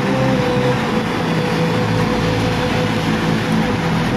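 Muddy floodwater rushing past in a fast torrent, a steady, unbroken rushing noise.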